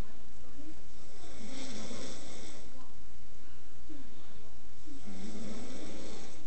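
A person breathing heavily and close to the microphone, in two long noisy breaths with some low throat noise.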